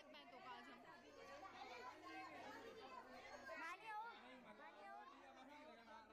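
Faint chatter of several people talking at once, overlapping voices of a gathered crowd.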